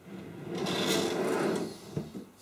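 White desk drawer sliding shut on its metal runners: a rolling rumble of about a second and a half, ending in a short knock as it closes near the end.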